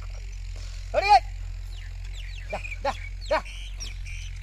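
A man's short, sharp shouted calls driving a pair of draught bullocks that pull a levelling board: a loud double call about a second in, then three quicker calls near the end.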